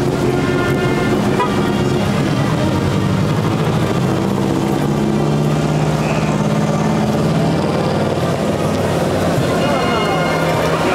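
A vehicle engine running steadily at idle, its pitch drifting slightly, with people's voices in the background.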